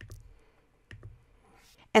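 Computer mouse clicking twice: a faint click at the start and a sharper one about a second in.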